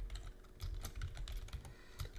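Computer keyboard typing: a quick run of quiet keystrokes as a word is typed out.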